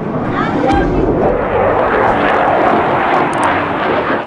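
Fighter jet engine roar during a flyby, a loud steady rushing noise that builds about half a second in, with voices under it; it cuts off abruptly at the end.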